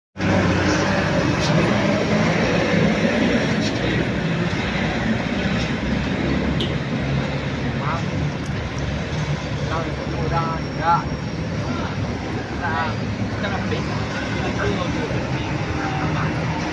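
Heavy diesel trucks and cars climbing slowly through a steep hairpin bend, a steady low engine drone with traffic noise. Short shouted voices come in between about eight and thirteen seconds in.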